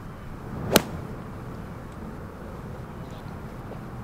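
Golf club swung through and striking a golf ball off the tee: a single sharp crack about three-quarters of a second in, over steady outdoor background noise.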